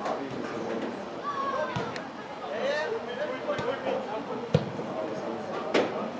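Several voices talking and calling, with a few sharp knocks scattered through, the loudest near the end.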